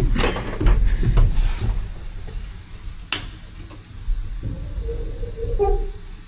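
Knocks and clatter of someone climbing into the steel cab of an LMTV military truck, heaviest in the first two seconds, then one sharp click about three seconds in and quieter knocks near the end.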